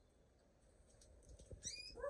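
Mostly near silence with a few faint clicks, then near the end a short, quick rising call from a canary.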